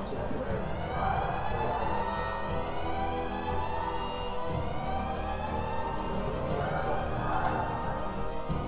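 Control-room loudspeaker sounding the countdown signal for a new JET tokamak plasma pulse: a siren-like tone that slowly rises and falls in pitch.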